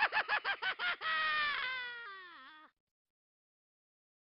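Short cartoon-style sound effect: a quick string of pitched yelp-like calls, about seven a second, then one long tone that slowly sinks and wobbles before cutting off abruptly nearly three seconds in.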